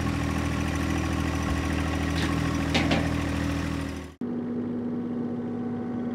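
Tractor engine running steadily, cutting off suddenly about four seconds in and giving way to a different, quieter steady hum.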